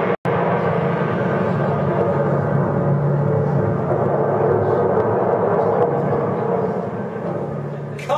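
Loud, continuous rumbling disaster sound effect played through a hall's loudspeakers, with a very short dropout just after it begins, easing off near the end.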